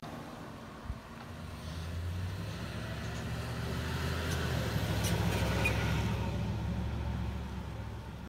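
A road vehicle passing by: its sound builds over several seconds, peaks about two-thirds of the way through and fades, over a steady low hum.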